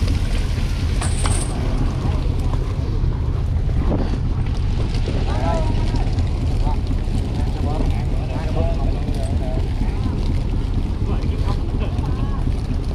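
Steady low rumble of a fishing trawler's diesel engine mixed with wind buffeting the microphone, with brief faint shouts from the crew in the middle.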